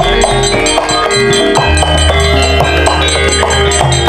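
Javanese gamelan ensemble playing: struck metallophones ringing in a steady, regular pattern over a drum beat.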